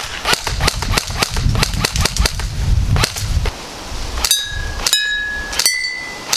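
G36C airsoft electric rifle firing quick single shots: a fast, uneven run of sharp cracks. From about four seconds in, BBs strike glass wine bottles, and each hit rings out a clear note, a different pitch on each bottle.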